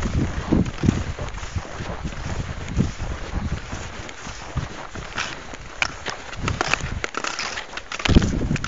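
Wind buffeting the microphone in gusts. From about five seconds in comes a run of short scraping, crunching sounds from ski-touring skis and poles on snow.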